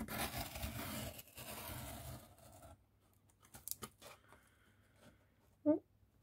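Craft knife blade drawn along a steel ruler through corrugated cardboard: one scratchy cut lasting about two and a half seconds, followed by a few light clicks. The pass does not quite cut all the way through.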